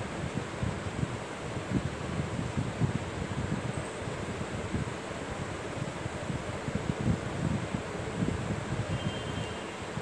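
Steady background hiss with irregular low rumbling from air buffeting the microphone.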